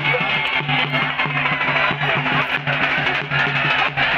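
Background music with a steady beat, its low notes repeating evenly throughout.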